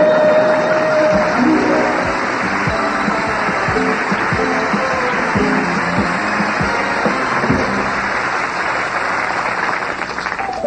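Studio audience applause over the house band's play-off music: a held note at the start, then a brisk tune with regular low hits.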